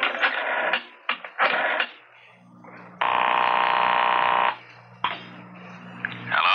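A short music bridge dies away, then a telephone rings: one steady ring about a second and a half long, starting about three seconds in, and a brief second burst near the end.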